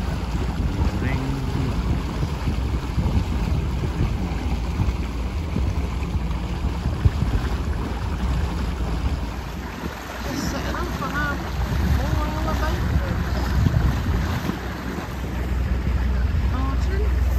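Small motorboat under way: its engine running steadily with water rushing along the hull and wind buffeting the microphone.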